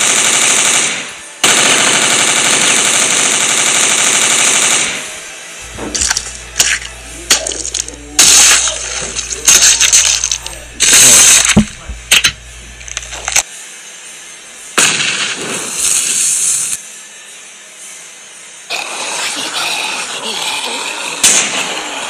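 Sound-effect automatic gunfire, one long unbroken burst with a short break about a second in, stopping about five seconds in. It is followed by a series of sharp, scattered hits and crashes over a low hum.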